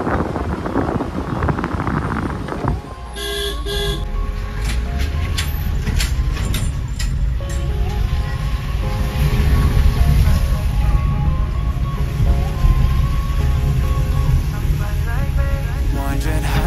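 Road and wind noise from a moving car, then two short vehicle-horn blasts in quick succession about three seconds in. After the honks a steady low rumble of the car driving runs under faint music.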